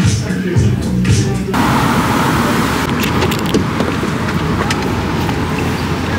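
Shop sound cuts off suddenly about a second and a half in to steady city street traffic noise. Later comes rougher handling noise with a few sharp clicks as a car door is opened.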